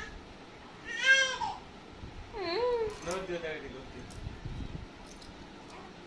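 A cat meowing three times, played through a smartphone's speaker. The loudest meow comes about a second in, and two shorter, wavering meows follow near the middle.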